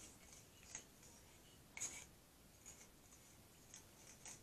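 Faint scraping of a mixing spatula against the inside of a plastic measuring cup, scraping out thick epoxy resin: a few short scrapes over near silence, the clearest a little under two seconds in.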